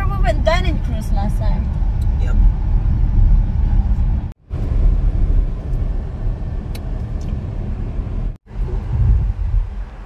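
Car cabin noise while driving: a steady low road and engine rumble, with a voice briefly at the start. The sound cuts out for a moment twice.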